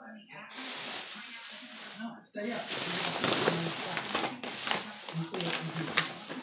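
Plastic shopping bag rustling and crinkling as items are dug out of it, in two stretches: a softer one, then after a brief break a louder, denser rustle with sharp crackles.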